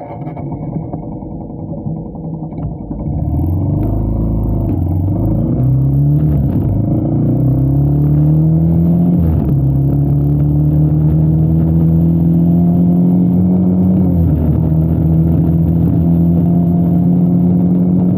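Motorcycle engine pulling away and accelerating, getting louder about three seconds in. Its pitch climbs and falls back at each gear change, three times, and then holds fairly steady at cruising speed.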